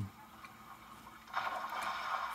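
GOKO TC-20 telecine player starting to run a Super 8 film: after a quiet first second, a steady whirring hiss comes in about one and a half seconds in and keeps going.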